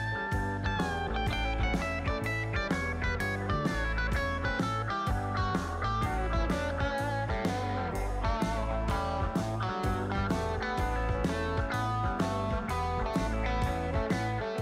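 Instrumental background music led by guitar, with a steady beat and a strong bass line.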